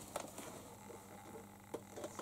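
Quiet room tone with a faint steady hum and a few small, sharp clicks and light rustles, one click near the end standing out.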